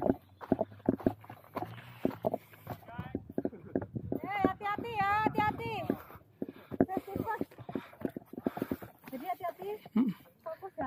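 Footsteps of trail runners crunching up a rocky, sandy mountain path, quick irregular steps throughout. About halfway through, a voice calls out in one long wavering note.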